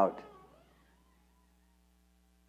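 The end of a man's drawn-out spoken word fading into the room's reverberation, then a pause of near silence with only a faint steady hum.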